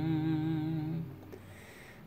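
A hummed note held with slight vibrato over a ringing acoustic guitar chord, both dying away about halfway through.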